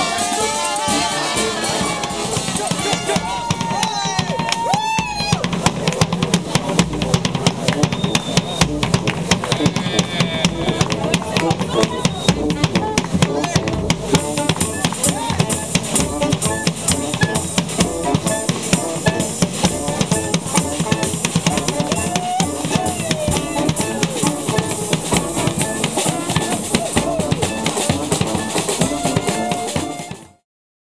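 A brass band playing a lively tune, led by a driving snare and bass drum beat, with horn lines over it. The music stops abruptly at the end.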